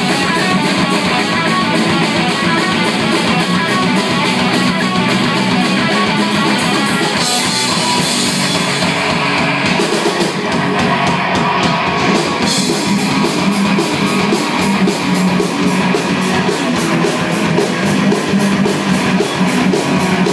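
Live rock band playing loud: electric guitars over a Pearl drum kit, with a steady cymbal beat taking hold a little past the middle.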